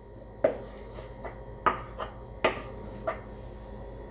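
About six sharp taps and knocks of a kitchen utensil and bowl against a glass mixing bowl, spaced irregularly, as a wet mixture is scraped out of one bowl into another.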